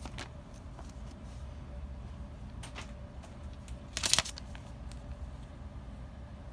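Bagged comic books being handled and swapped, with a few light clicks and one brief, louder plastic rustle about four seconds in, over a low steady hum.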